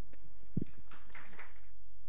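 A single dull thump a little past halfway, from the host's handheld microphone being lowered and handled, over a steady low electrical hum from the PA. Near the end the faint room sound drops out, leaving only the hum.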